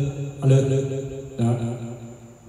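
Man's drawn-out 'alô' microphone-test calls, twice, amplified through BMB CSD-2000C karaoke speakers by a Jarguar PA-506XG amplifier, each call fading off in the amplifier's built-in echo.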